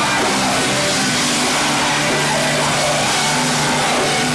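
Live heavy rock band playing loudly, with guitars and drums, as one unbroken wall of sound.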